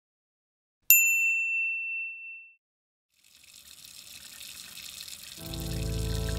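A single bright chime about a second in, ringing out over a second and a half. After a short silence, water running from a tap into a sink fades in and grows, and a low steady music drone joins near the end.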